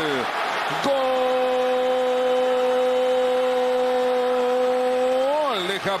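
A Spanish-language football commentator's drawn-out goal call, one long shout held on a steady note for about four and a half seconds before it falls away near the end.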